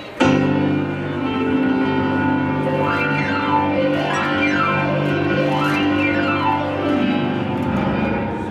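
Electric keyboard with a piano voice: a chord is struck and held, then glissandos sweep up and down the keys several times, the last sweep running down into the low notes near the end.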